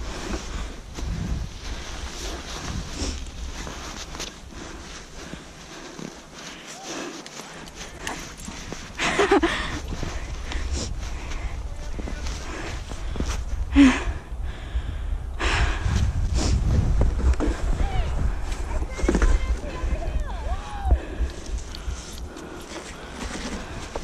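Plastic sled sliding down a snowy slope, with wind rumbling on the microphone and the hiss of snow under the sled. Short voice calls come through now and then.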